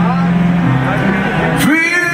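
Live rock band music, a steady low chord sustained, with a male lead vocalist singing into the microphone; near the end his voice slides up into a held note.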